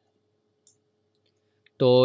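Near silence broken by one faint click about two-thirds of a second in, from the computer mouse as the document is zoomed out; a man's voice starts just before the end.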